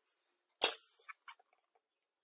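A hardcover picture book handled close to the microphone as its page is turned: one sharp click about half a second in, followed by a couple of faint clicks.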